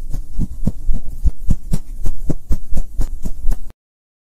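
A rapid run of low thumps, about four or five a second, each with a faint high tick, from an animated logo's sound design. It cuts off suddenly shortly before the end.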